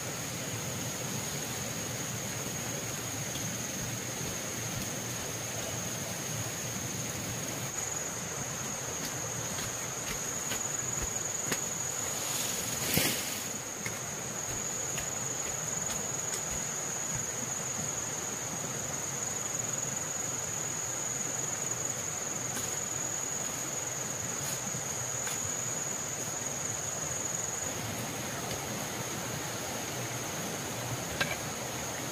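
Steady high-pitched insect chirring over a background hiss, with one sharp knock about halfway through.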